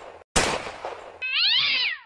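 A sudden hit-like noise that dies away, then one cat meow rising and falling in pitch near the end; both are cartoon sound effects.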